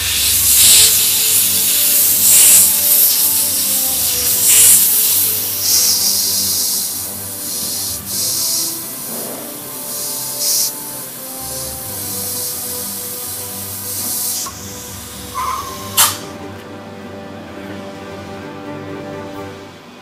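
Edsyn 971HA hot air rework station blowing hot air through its special application tip onto a surface-mount component, a hiss that swells and fades as the nozzle is worked, heating the solder so the air pressure can lift the part off. The air stops with a sharp click about sixteen seconds in, over steady low tones.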